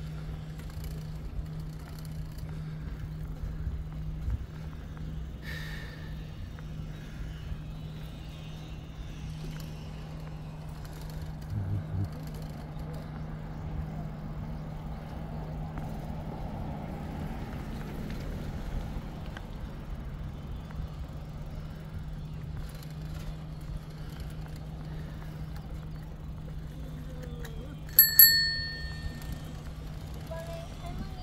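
Bicycle bell rung once near the end, a bright ding that rings on briefly, over steady riding noise with a low hum.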